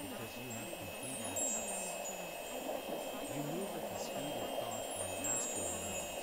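Ambient meditation soundscape of wind chimes ringing in a steady, tinkling shimmer over a continuous soft wash. Beneath it runs a faint, wavering voice, too low to make out, as in a subliminal affirmation track.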